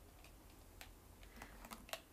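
Near silence broken by a few faint, short clicks: one just under a second in, then several close together near the end.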